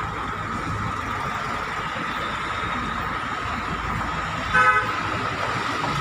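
Road traffic running steadily, with one short vehicle horn toot about four and a half seconds in, the loudest sound.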